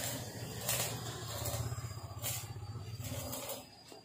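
A small engine idling with a low, fast, steady pulse that fades out near the end, with a couple of brief hissing noises over it.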